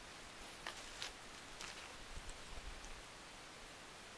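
Faint rustling and a few light clicks in the first two seconds, as bamboo skewers and gummy candies are handled on dry fallen leaves and grass.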